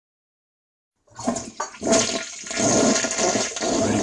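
Loud rushing water that starts suddenly about a second in, after dead silence.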